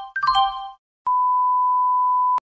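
A short electronic chime of several bright notes dies away, and about a second in a single steady high beep tone starts and holds.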